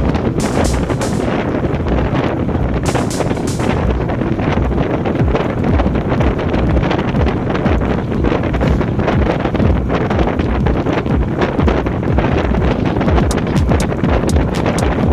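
Wind rushing hard over a bike-mounted action camera's microphone as the road bike rides at speed, with brief hissing gusts in the first few seconds.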